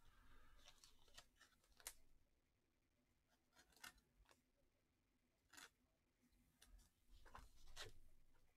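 Very faint handling sounds: a few soft clicks and rustles of cards in plastic holders being picked up and moved, spaced a second or two apart, with the last cluster near the end.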